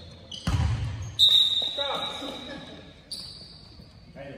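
A basketball bouncing on a hardwood gym floor, with a deep thud about half a second in. About a second in comes a sharp, loud sound followed by a high shrill tone that lasts about two seconds and fades, and there are shouting voices, all echoing in the large hall.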